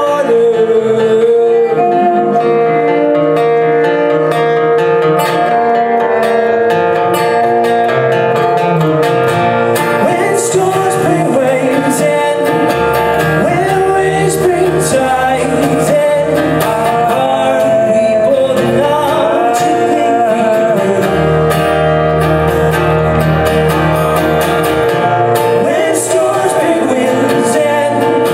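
Live folk song: a man singing over a strummed acoustic guitar and a bowed cello. Long low notes sound in two stretches in the second half.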